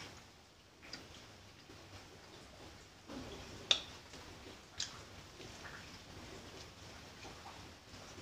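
Quiet close-up chewing of a toasted bread sandwich, with a few short sharp mouth clicks, the loudest a little before the middle.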